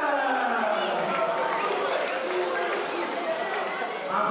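Ring announcer's voice over a microphone and public-address system, drawing out words in one long call that falls in pitch over the first second or so, then carrying on with more stretched-out announcing.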